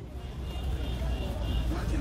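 Outdoor background noise: a steady low rumble that slowly grows louder, with faint voices in the distance.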